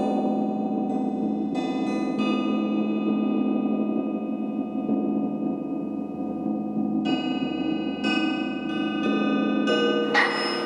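Soundtrack music of struck, gong-like metallic tones, each ringing on long. Fresh strikes come a few times in the first two seconds and again from about seven seconds in, layering over the sustained ring.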